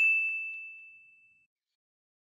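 Ding sound effect: a single high, bell-like tone, struck just before and dying away over about a second and a half.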